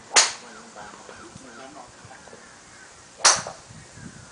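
Two sharp cracks of golf clubs striking balls, about three seconds apart.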